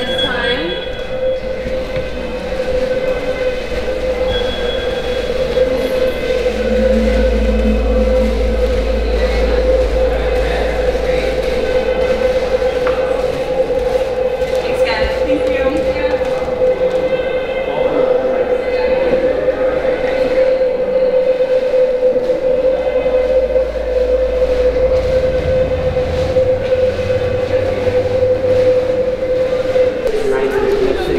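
A steady drone held at one pitch, with a deep rumble that swells in twice underneath it.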